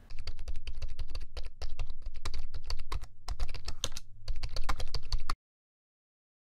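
Rapid typing on a computer keyboard, a quick run of key clicks with a few brief pauses, over a low hum. It cuts off abruptly near the end.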